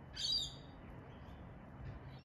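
A bird gives a single short, high call about a quarter of a second in.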